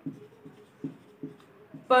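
Marker pen writing on a whiteboard: a series of short separate strokes as letters are written.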